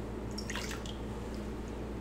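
Water poured from a plastic measuring cup into a glass mixing bowl, quietly trickling and ending in a few drips.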